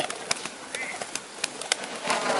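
Held pigeons flapping their wings, a string of sharp irregular claps several times a second, as handlers wave hen pigeons overhead to lure the racing males down.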